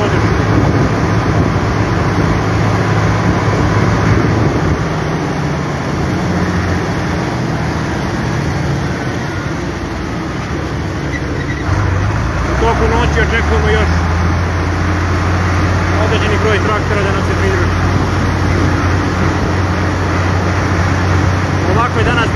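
A tractor engine drones steadily while driving on the road, heard from inside the cab. About 12 s in, the engine note drops lower and gets louder.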